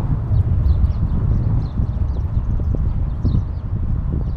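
Wind buffeting the microphone of a moving bike-mounted camera, a steady low rumble, with a few sharp knocks and rattles from the ride over the road surface and faint high chirps above.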